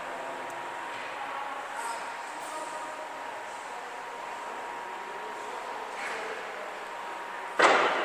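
Steady background hiss of a large indoor hall with a faint steady hum and faint distant voices, then one sudden loud burst of noise near the end.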